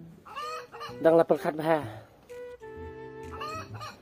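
Chickens clucking, with a drawn-out hen call a little past the middle.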